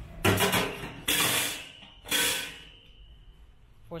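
A stainless steel wire rack being laid onto a stainless steel fryer tank: three clattering knocks of metal on metal about a second apart, the last leaving a high ring that fades.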